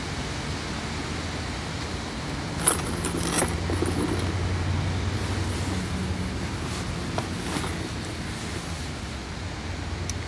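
Low, steady engine hum of a nearby road vehicle, growing louder about four seconds in and then easing off, with a few light clicks about three seconds in.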